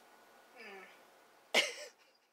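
A person's single short cough about one and a half seconds in, preceded by a soft, falling vocal sound; otherwise quiet.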